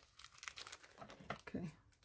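Faint crinkling of a clear plastic wrapping as a wrapped bundle is picked up and handled, in short scattered crackles.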